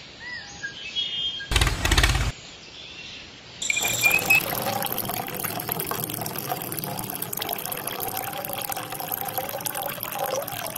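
Liquid pouring in a steady stream from a small pipe into a miniature tank's filler opening, starting about three and a half seconds in. Earlier there is a short loud rustling burst, with faint bird chirps.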